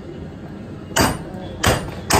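Two hammer blows on the front wheel hub and brake caliper assembly of a car, metal on metal with a short ring, about a second in and again a moment later.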